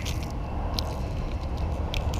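A steady low rumble, with a few faint clicks as a lipless crankbait's metal treble hooks are worked free of a bass's mouth.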